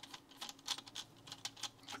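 Faint, irregular light clicks of a Vessel Vector insulated screwdriver's tip working the terminal screw of a solid-state relay, about a dozen ticks spread over two seconds.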